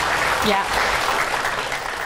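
Studio audience applauding, the clapping easing off toward the end.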